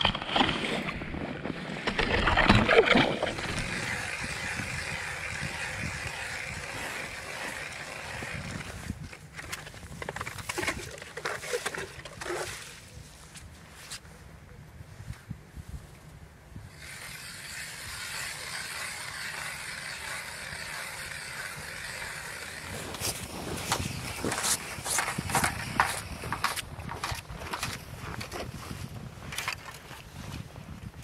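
Hand ice auger drilling through lake ice: a steady grinding scrape in long spells, with pauses between holes. Scattered knocks and crunches come near the end.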